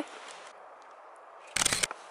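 A camera shutter firing once about a second and a half in, a short mechanical click-clack, over faint outdoor background.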